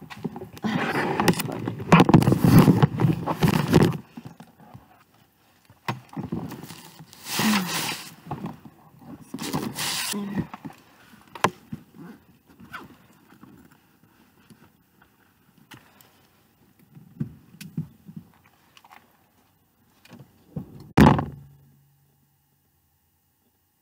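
Rustling, scraping and bumping of a camera being handled and set down on a seat inside a car, with scattered knocks. There is one loud, short thump near the end.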